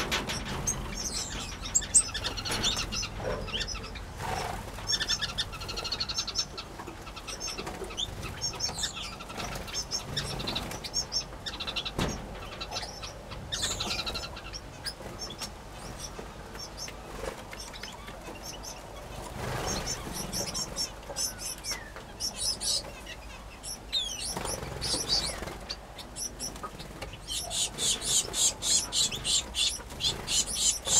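Aviary finches and canaries chirping with short, high calls, with wings flapping as birds fly between perches. Near the end a quick, regular run of repeated high chirps.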